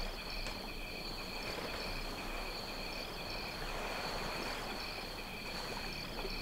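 Steady high chirring of crickets, faint and continuous, over quiet room tone.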